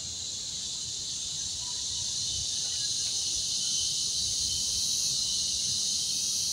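Insect chorus outdoors: a steady, high-pitched shrill hiss that grows slightly louder as it goes on.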